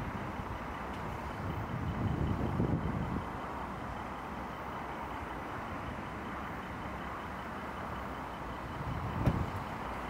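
Volkswagen Touareg's 3.0-litre V6 idling steadily, heard from behind the car. A car door shuts with a short thump near the end.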